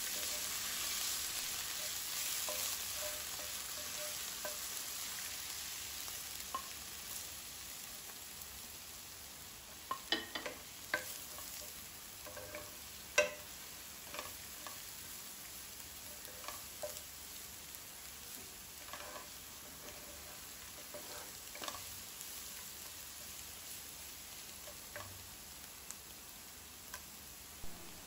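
Oil sizzling steadily around finely chopped aromatics frying in a granite-coated wok, the sizzle slowly fading over time. A wooden spatula stirs and scrapes through it, with scattered clicks against the pan, the sharpest about 13 seconds in.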